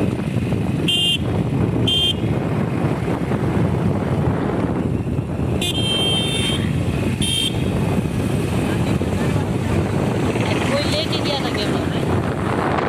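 Steady wind rush and motorcycle engine noise while riding along a road. Short horn beeps cut through: one about a second in, another a second later, then a longer beep around six seconds and a short one just after.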